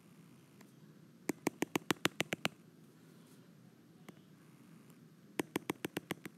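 A stylus tapping on an iPad's glass screen, a run of quick light clicks about eight a second, then a shorter run near the end, as dotted lines are drawn dot by dot.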